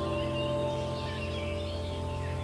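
Soft new-age background music: a held chord slowly fading, with bird chirps above it.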